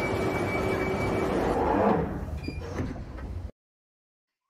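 Sound effect of a London Underground train: a steady rumble with a thin, high whine, swelling about a second and a half in, then fading and cutting off abruptly shortly before the end.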